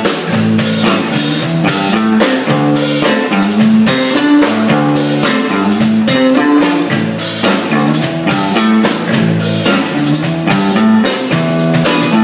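Live band playing an instrumental passage: electric guitars over a steady drum-kit beat, with no vocals.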